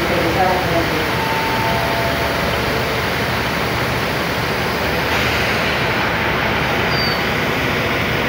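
Diesel railcar (DMU) train standing at a platform with its engines idling, a steady low hum.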